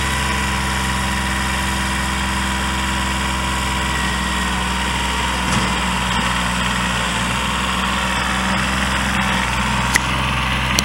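Kubota B7100 compact tractor's three-cylinder diesel engine running at a steady speed while the tractor is driven along.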